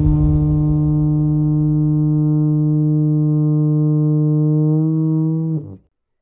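A long wooden horn blown in one sustained low note with a rich, buzzy tone. It holds steady for about five and a half seconds, then sags in pitch and stops shortly before the end.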